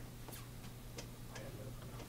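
A few faint, unevenly spaced clicks over a low steady hum.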